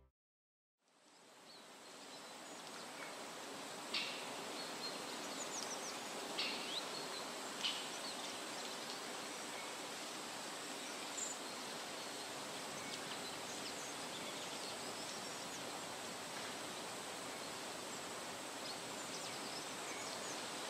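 Quiet forest ambience: a steady soft hiss of outdoor background noise fades in after a second of silence, with a few faint, short bird chirps scattered through it.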